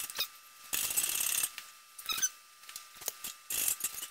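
Hand-pumped 50-ton hydraulic shop press at work pressing a bearing onto a differential, with metal parts handled: scattered sharp metal clicks and two short noisy bursts, one about three-quarters of a second in and one near the end.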